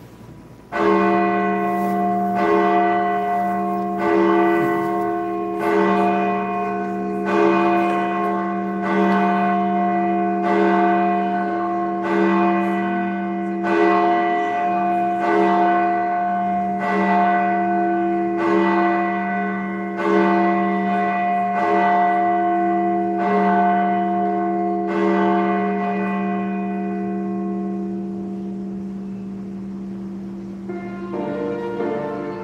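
A church bell tolling at an even pace, one stroke about every second and a half, its ring carrying on between strokes. The strokes stop a few seconds before the end and the ring fades away.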